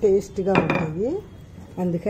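One sharp knock about half a second in, as a heavy stone pestle is set down against a stone grinding mortar, with a woman talking.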